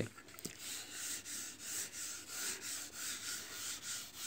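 Chalk writing on a blackboard: a faint run of short scratchy strokes, about two or three a second.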